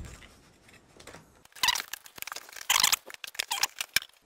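Cardboard box being opened by hand: two short tearing scrapes of the tape and flaps about halfway through, followed by a few light knocks and rustles of cardboard.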